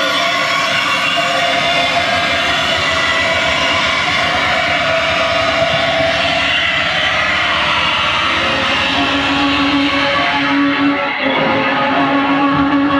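Live harsh noise music from electronics and effects pedals: a loud, dense wall of distorted noise with many held, droning tones. About nine seconds in, a strong low drone enters, and shortly after, the highest hiss fades out.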